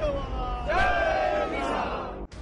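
A crowd of protesters shouting a slogan together: one long chorus of voices, starting a little under a second in.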